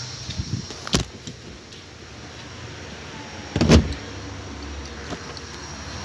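A rear seat of a Toyota SW4 SUV being put back upright by hand: a sharp click about a second in, then a louder clunk a little past the middle as the seat mechanism latches.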